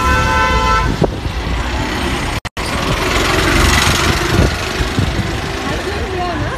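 Busy street traffic: a car horn held on one steady note for about a second at the start, then the steady noise of passing vehicles. The sound cuts out completely for a moment a little before halfway.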